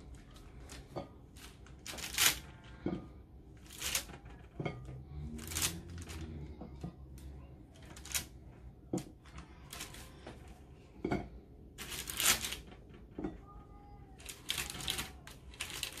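Baking paper crinkling and crackling as chocolate-dipped strawberries are peeled off it, with light taps as they are set down on a china plate. The sounds come irregularly, a sharp crackle or tap every second or two.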